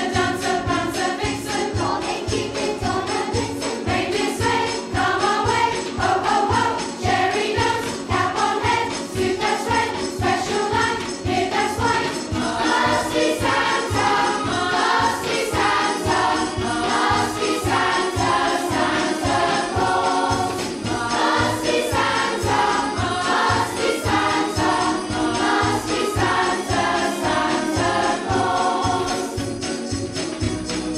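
A children's choir singing in unison over a backing track with a steady beat and jingle bells.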